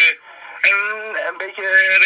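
A recorded man's voice speaking Dutch, played through a sharp 741 op-amp audio filter and a small test amplifier's loudspeaker, so it sounds thin and narrow-band like a radio. It breaks off briefly just after the start and carries on about half a second in.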